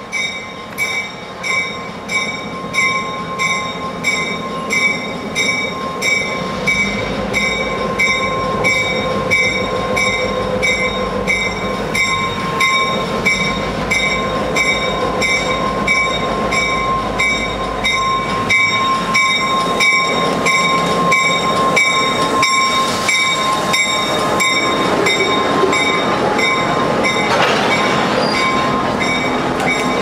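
A Norfolk Southern diesel locomotive rolls slowly past with its bell ringing steadily, about two strokes a second. Its engine rumbles as it goes by in the middle. Then a string of covered hopper cars rolls past, with wheel and rail noise growing in the last third.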